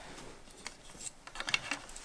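Faint small clicks and rubbing as a metal nail is fitted into a peg hole of a wooden mat frame and hands handle the stretched hessian.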